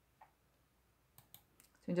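Near silence broken by a few faint, short clicks past the middle, then a voice starts reading aloud in Korean just before the end.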